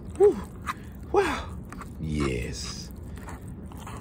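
A man laughing in three short bursts of falling pitch in the first half, over a spoon stirring thick oatmeal in a metal pot.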